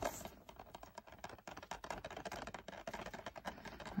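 Faint, irregular small clicks and rustling of a plastic DVD case being handled and turned over in the hand.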